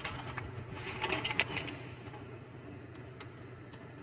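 Small clicks and handling sounds from wires and a plug-in connector being worked at a gate operator's control board, several in the first second and a half, over a steady low hum.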